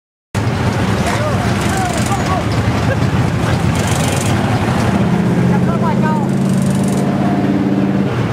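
A race car engine running with a deep, steady rumble that settles into an even note from about five seconds in, with people talking over it.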